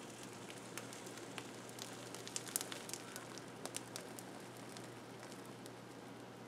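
Homemade impression mat being peeled off the top of a slab of cold-process soap, giving faint scattered crackles and clicks as it comes away, most of them in the middle of the peel.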